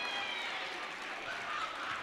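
Gymnasium crowd noise: a steady haze of indistinct chatter and faint shouts from the stands, with no single loud event.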